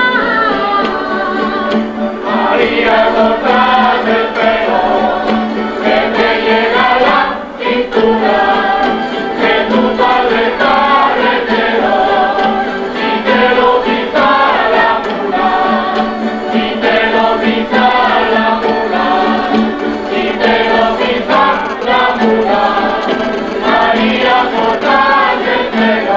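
Canarian folk group (agrupación folclórica) singing in chorus with guitar accompaniment, a woman's voice leading at the start, with a short break about seven and a half seconds in.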